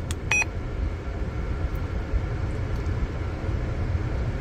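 One short electronic key beep from a Retevis RA86 GMRS radio as its weather button is pressed, followed by a steady low rumble of the car cabin. No weather broadcast comes through: the radio is not receiving any weather channel.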